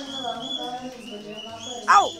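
A child speaking. Just before the end comes a short, loud cry that falls sharply in pitch.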